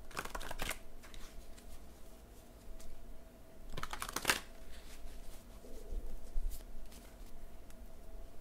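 Tarot cards being shuffled by hand: two short bursts of rapid flicking, each about half a second long, one just after the start and one about four seconds in, with a few lighter card ticks between.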